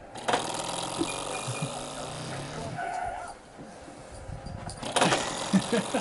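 Soft voice sounds and rustling, with two sharp knocks, one about a third of a second in and one about five seconds in, and a laugh at the very end.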